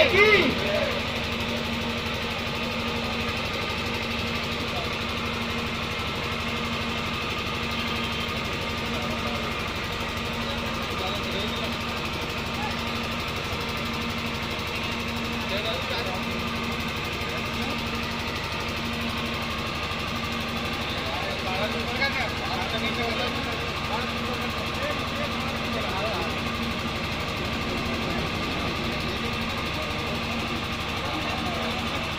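Steady low hum of a running engine, with faint voices of people talking around it and a short burst of louder talk about two-thirds of the way through.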